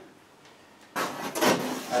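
About a second of quiet, then a short rough rubbing scrape from a large MDF board being handled against the wall. Speech begins right at the end.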